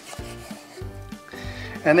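A carving knife sawing back and forth through roasted duck breast and scraping on a wooden cutting board, over background music.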